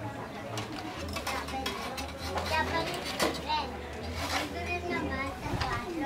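Background chatter of several voices, children's among them, too indistinct to make out words, with scattered light clinks and clicks.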